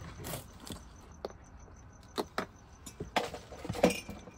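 Christmas decorations being handled in a plastic storage bin: a few light knocks and rustles as items are moved about, the loudest knock near the end.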